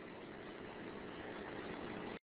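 Steady faint background hiss of room tone and recording noise, with no distinct event, growing slightly louder.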